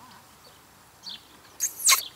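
Faint, short bird chirps in the background, then near the end a loud, brief sound sliding steeply down in pitch.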